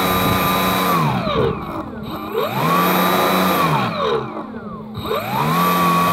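Small electric motor and propeller running with a high, steady whine that winds down about a second in and again about four seconds in, each time spinning back up within a second. The slowdowns are the receiver's stability control (SVC) cutting throttle automatically as the vehicle is turned, while the throttle is held in one position.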